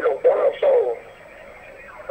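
Thai-language TV commentary: a voice speaks for about the first second, then only low, steady background noise remains.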